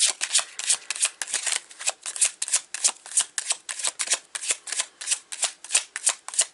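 Tarot deck being shuffled by hand, the cards striking together in quick, even strokes, about six a second.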